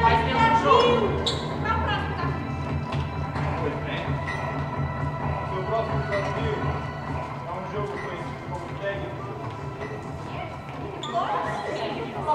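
Indistinct children's voices and footsteps on a stage, heard in the echo of a large hall over soft background music. The voices grow louder again near the end.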